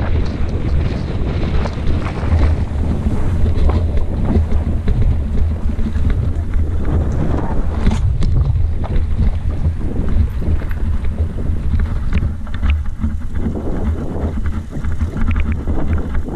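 Wind buffeting the camera's microphone as a mountain bike rolls downhill on a rough dirt and stone track, with the bike's rattles and knocks over the bumps throughout; one sharper knock about eight seconds in.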